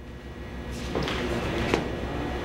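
Footsteps and shuffling on a stage floor, with a few light knocks, over a steady low hum.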